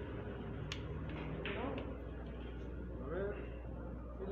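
A cue striking the ball in three-cushion carom billiards, a single sharp click under a second in, followed by a quick run of clicks as the balls hit each other over the next second. Voices murmur in the background.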